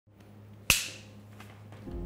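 A single sharp click with a brief ringing tail about a third of the way in, over a faint low hum. Soft music begins right at the end.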